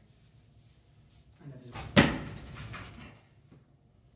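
A single sharp bang about halfway through, ringing briefly in a small tiled room, with softer knocks and rustling just before it.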